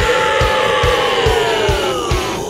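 Hard rock song: a singer holds one long note that sags in pitch near the end, over a band with a steady kick-drum beat of about two hits a second.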